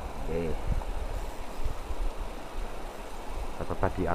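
Fast river current rushing steadily, with an uneven low rumble.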